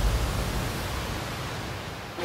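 A steady rushing noise, even across high and low pitches, that slowly fades away.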